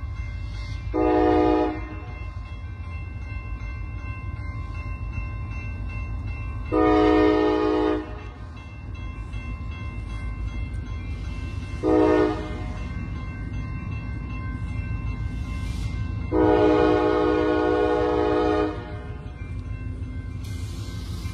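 Diesel locomotive's air horn sounding four blasts in the long-long-short-long pattern of a grade-crossing signal, the third short and the last the longest, over a steady low rumble.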